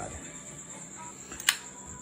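Bestech Hornet liner-lock folding knife deployed: one sharp click about one and a half seconds in as the blade snaps open and locks.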